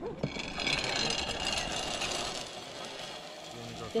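Zip-line trolley pulleys running along a steel cable: a steady whirring hiss that sets in about half a second in and fades over the next few seconds.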